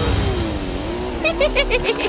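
Cartoon car engine running under background music, with a quick run of about six short, high notes in the second half.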